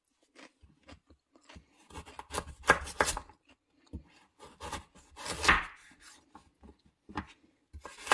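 Chef's knife cutting a peeled raw carrot lengthwise into planks on a wooden cutting board: a series of cuts, each ending in a knock of the blade on the board. The loudest come in a cluster about two to three seconds in and again about five and a half seconds in.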